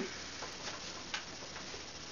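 Quiet room tone with a couple of faint clicks, about half a second and a little over a second in.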